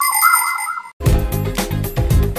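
A short electronic jingle of warbling beeps over steady high tones, cut off just under a second in. After a brief gap, a bass-heavy musical ident with rhythmic beats begins.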